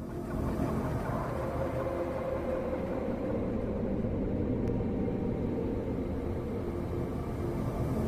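A steady low rumbling hum that fades in from silence at the start and holds evenly, with a few faint held tones in it.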